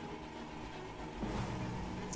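Faint steady room tone: a low hiss with a thin constant hum, a little louder from about a second in.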